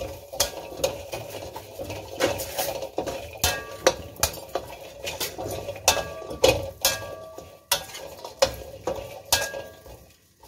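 A metal ladle scraping and clanking against a steel wok in irregular strokes while stirring whole garlic cloves, shallots and red chillies as they dry-roast, the wok ringing after the sharper strikes.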